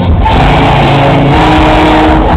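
Live pop band music played very loud through a concert PA, with a sung melody over heavy bass, recorded on a phone from within the crowd.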